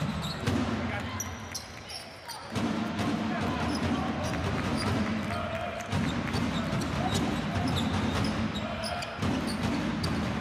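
Basketball dribbled on a hardwood court, with short high sneaker squeaks from players moving on the floor.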